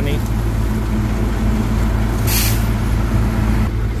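Steady low engine drone aboard a river car ferry under way, with a short hiss about two seconds in.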